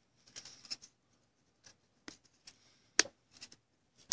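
Basketball trading cards being flipped through by hand: faint, scattered clicks and scrapes of card edges, with one sharper click about three seconds in.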